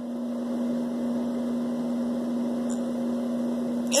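A steady hum holding one constant low tone, over an even hiss.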